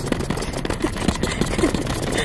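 Scratchy rubbing and handling noise from the camera lens being wiped clean, right against the camera's microphone.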